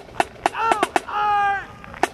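Sharp snare-drum strikes from a marching drummer beating an irregular cadence, with a loud drawn-out voice call, like a shouted drill command, held for about half a second in the middle.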